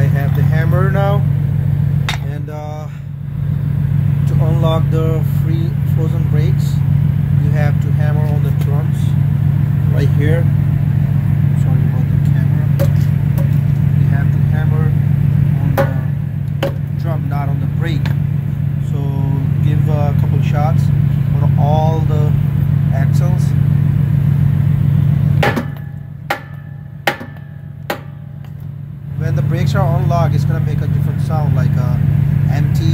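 Semi truck's diesel engine idling with a steady low hum. Near the end the hum drops away and three sharp knocks sound, just under a second apart.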